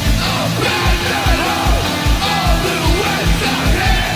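Oi! punk rock recording: distorted electric guitars and bass over a steady, driving kick-drum beat, with shouted vocals.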